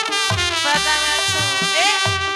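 Gambang kromong, Betawi ensemble music: a melodic lead holds notes and slides in pitch over a steady low beat.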